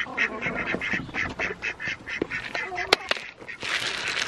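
Ducks quacking in a rapid run of short calls among chickens, with a sharp click about three seconds in. Near the end, feed poured from a bucket onto the grass adds a hiss.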